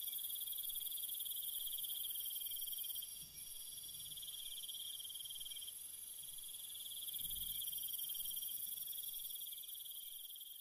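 Crickets trilling steadily at a high pitch, with two faint low thuds, one about three seconds in and another about seven seconds in.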